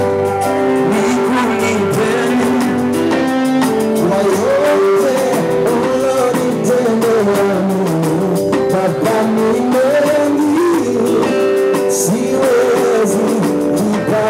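Live band music with a male lead singer singing into a microphone over electric guitar and band accompaniment.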